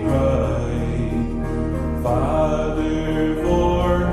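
Country gospel hymn: a man's voice holds long notes over acoustic guitar and piano accompaniment, with the chord changing about two seconds in and again near the end.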